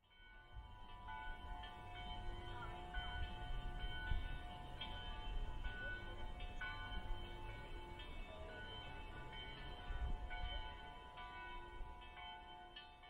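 The Loreta carillon in Prague playing a melody, its bells struck one after another with overlapping ringing notes. Faint, with a low rumble underneath.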